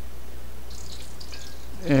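Steady low hum and background hiss with no distinct event, and a brief faint hiss about a second in. A man's voice begins right at the end.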